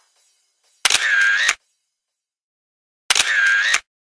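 A camera shutter sound effect plays twice, each time a sharp mechanical shot of about two-thirds of a second. The two shots are a little over two seconds apart.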